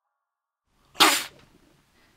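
A man's single sharp, explosive splutter about a second in, as he chokes on a mouthful of drink.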